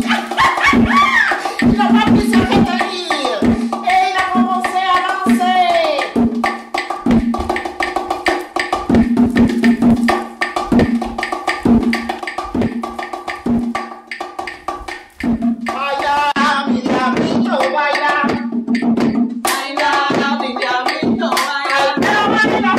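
A pair of bongos played by hand in a fast Cuban rhythm, the larger drum giving a deeper tone and the smaller a higher one, with claves clicking along. Voices sing and call out over the drumming in the first few seconds and again in the last few.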